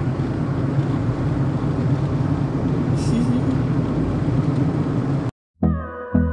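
Steady rumble and road noise of a moving car heard from inside the cabin. It cuts off suddenly about five seconds in, and background music with a regular beat starts near the end.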